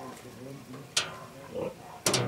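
Domestic pigs grunting, with a sudden sharp click about a second in.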